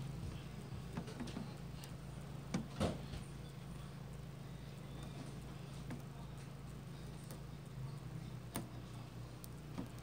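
Wire-mesh crawdad traps being handled: a few light clicks and knocks of metal, the loudest two close together about three seconds in, over a steady low hum.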